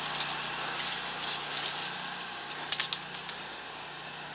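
Leaves and branches rustling and crackling as someone climbs about in a tree, with a few scattered sharp snaps or clicks, a cluster of them near the end.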